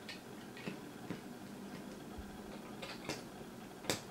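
Faint, scattered clicks and light knocks of plastic parts being handled: a diecast model car's front axle with its wheels being fitted onto the plastic chassis, with a sharper click near the end.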